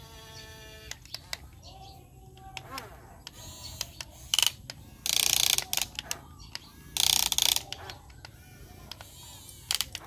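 Toy remote-control excavator's small electric gear motors running as it swings and works its boom and bucket, whirring and clicking like a ratchet. Two louder bursts of gear rattle, each about half a second, come about five and seven seconds in.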